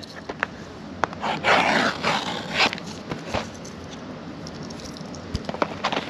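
Handling noise from a shrink-wrapped cardboard trading-card box being turned over in the hands: a few light taps, with a longer rustle of plastic wrap about a second and a half in.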